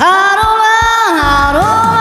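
A woman singing a sustained, loud vocal line into a microphone over a recorded backing track; the held note steps down in pitch about halfway through and rises back near the end.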